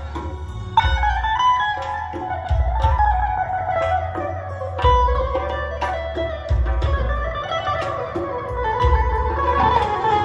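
A live band plays an instrumental passage through PA speakers. An electric guitar carries a winding melody over keyboard, with a hand-drum beat, a steady high ticking rhythm and heavy bass notes landing every couple of seconds.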